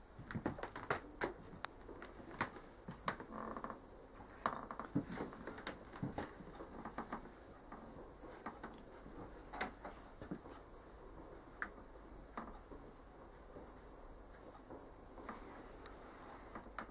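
Irregular light clicks, taps and rustles of a person moving about a room and handling things, busier in the first half, with a soft rustle of heavy cloth being handled near the end.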